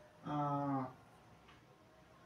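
A man's short hesitation sound, a hummed 'mmm' or 'uh' held on one steady pitch for about half a second.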